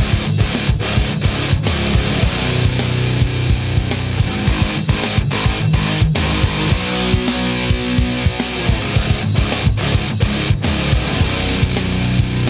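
Distorted PRS electric guitar played through an amp with gain, picking a heavy riff of quick strokes over held low notes.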